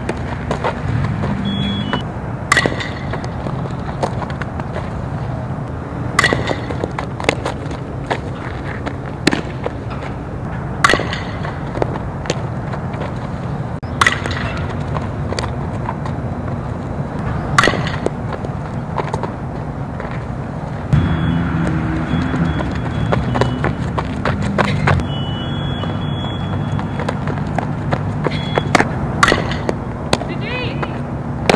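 Softball fielding drill: sharp knocks of the ball being hit and smacking into leather gloves, repeated every second or few, over a steady low background rumble.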